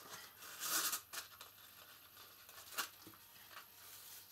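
Ribbon being pulled through the punched holes of a folded card box: a short rustling swish about a second in, then a few faint taps and crinkles of the card as it is handled.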